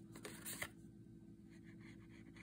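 Faint rustling and light crackles of card stock being handled, a few short ones in the first half second or so, then near quiet with a steady low hum.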